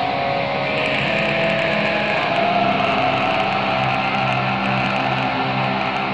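Stoner doom metal: electric guitars holding long, sustained notes, with no vocals.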